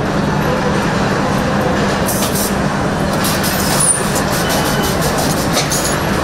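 Truck assembly-line floor noise: a steady din of machinery with a low hum, and from about two seconds in a run of short, sharp high hisses.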